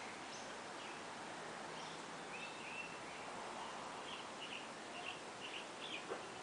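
Small birds chirping: a brief whistled note about two seconds in, then a quick run of short chirps near the end, over a steady background hiss.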